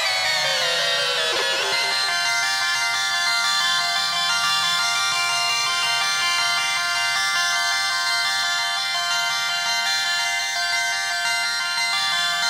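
Elektron Analog Four synthesizer playing live ambient electronic music: a cluster of falling pitch glides in the first couple of seconds settles into a dense, steady drone of many high tones held to the end.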